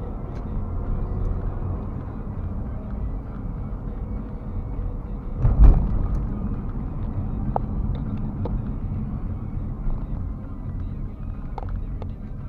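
Low, steady rumble of a moving car's engine and tyres on the road, heard from inside the cabin. There is a single thump a little past halfway through, and a few light clicks.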